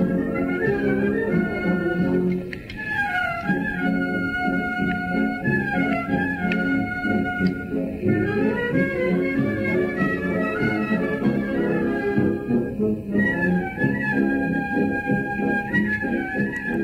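A wind band playing a pasodoble, with brass and woodwinds carrying the melody over a steady accompaniment.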